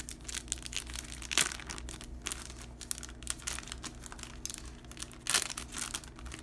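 A clear plastic cellophane sleeve and the old papers inside it crinkling and rustling as hands handle and open it: irregular crackles throughout, with louder crinkles about a second and a half in and again near the end.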